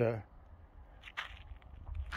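A man's voice saying a hesitant "uh", then a pause holding only a faint steady low rumble and a brief faint noise about a second in.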